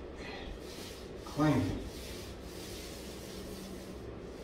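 Paint roller on an extension pole rolling paint on, a steady rubbing swish. About a second and a half in, a short voice sound falls in pitch.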